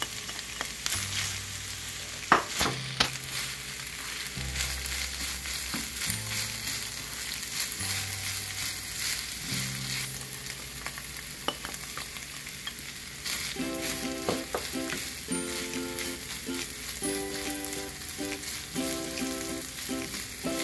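Ground beef and diced potato sizzling as they fry in a nonstick skillet, stirred and scraped with a plastic spatula, with a sharp knock about two seconds in.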